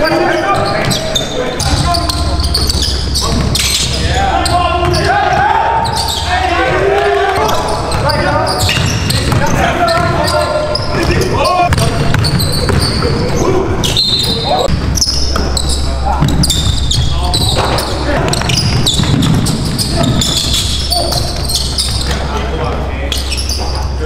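Basketball bouncing on a hardwood gym floor amid voices, with a deep steady bass tone underneath for long stretches.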